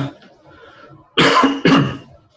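A man coughing twice in quick succession, each cough about a third of a second long and loud.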